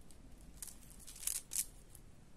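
Faceted plastic beads and nylon thread being handled while beading: a few soft clicks and rustles, three of them near the middle.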